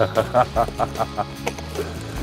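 A man laughing in a run of short chuckles, about five a second, fading away, over background music with steady held notes.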